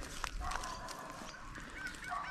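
Footsteps crunching on dry, gravelly ground, with faint outdoor background and a few short bird chirps near the end.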